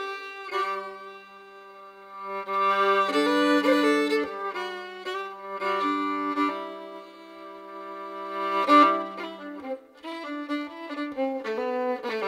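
Fiddle playing the instrumental introduction to an English folk song: a bowed melody over a held low drone note that drops out near ten seconds in, after which the tune moves in quicker notes.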